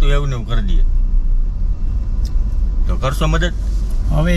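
Steady low rumble of a car on the road, heard inside the cabin, with men's voices briefly at the start and about three seconds in.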